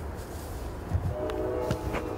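A horn sounds a steady chord for about a second, starting about halfway in, over a low rumble.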